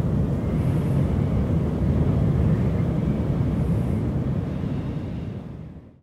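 A low, steady rumble that fades out to silence in the last second.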